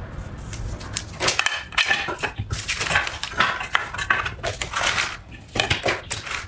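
Crisp crinkling and light clicks of a dry nori seaweed sheet and a plastic sushi mold being handled, starting about a second in.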